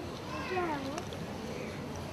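A single short cry, about half a second long, falling in pitch and turning up at the end, like a cat's meow, with a faint click just after it.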